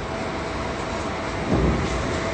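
Steady rushing wind noise on the phone's microphone, high up on an open skyscraper floor, with a low rumble swelling about one and a half seconds in.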